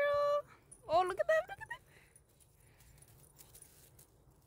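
A high, sing-song voice calling a dog: a drawn-out call held at the start, then a shorter call about a second in, followed by quiet.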